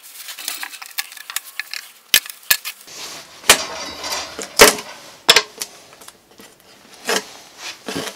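Thin wooden guide strips being pried off a plywood board and set down on it: a series of sharp wooden clacks, about six, with scraping and the peeling of double-sided tape between them.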